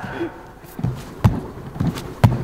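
A few short, dull thumps and knocks from a gymnast's hands and body on a pommel-horse mushroom trainer as he pushes off and swings his legs into circles around it.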